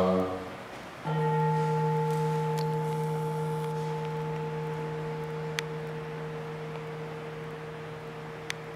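An altar bell struck once, about a second in, at the elevation of the host during the consecration, its deep tone ringing on and slowly fading.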